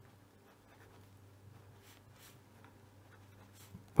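Fineliner pen writing on paper: faint, light scratching strokes.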